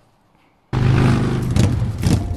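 After near silence, a loud sound effect with a steady low rumble cuts in suddenly about two-thirds of a second in, accompanying a title card.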